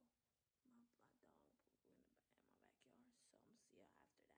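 Very faint whispered speech, a single voice close to the microphone.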